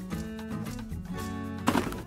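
Instrumental background music, its notes changing a few times a second, with a brief rustle near the end.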